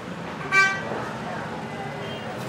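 A single short car horn toot about half a second in, over steady background street noise.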